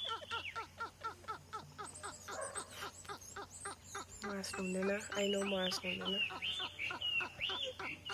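Men laughing hard in quick rhythmic bursts, played back from a comedy clip. About halfway through, the laughter turns into longer, higher-pitched 'ha' sounds.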